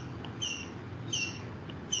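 A short high chirp repeating evenly, about one every 0.7 seconds, three times.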